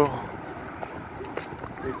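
A few light footsteps on a concrete sidewalk, soft taps over a low outdoor hiss.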